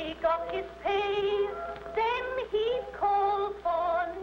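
A woman singing long held notes with a wavering pitch, in short phrases, played back from an early cylinder phonograph recording.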